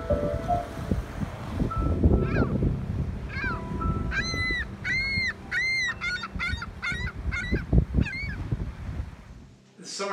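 Ring-billed gull calling: a series of calls that each rise and fall in pitch, starting about two seconds in, the three longest in the middle followed by quicker, shorter notes. Wind buffets the microphone underneath.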